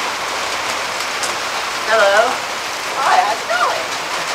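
A steady, even hiss, like rain on a roof or a recording's background noise. Brief voice sounds come through it about two seconds in and again just after three seconds.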